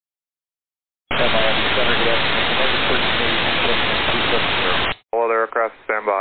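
Air-band VHF radio transmission: a loud hiss of radio static starts abruptly about a second in and cuts off abruptly about four seconds later, with a faint, unreadable voice buried in it. Clear radio speech from a controller follows just after.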